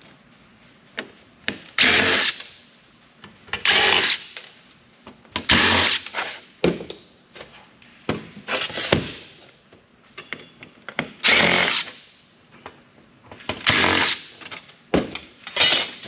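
Cordless impact driver running in short bursts, about seven spurts each under a second and roughly two seconds apart, backing screws out of an old 5.25-inch floppy drive's metal casing, with small clicks of handling between.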